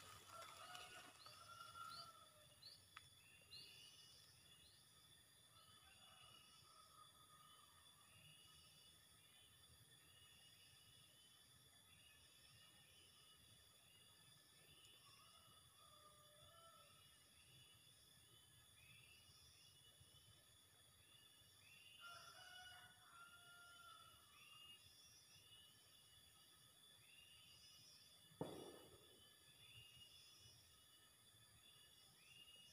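Near silence: faint outdoor ambience with small birds chirping in short, repeated calls over a steady, faint high hum. One brief knock sounds near the end.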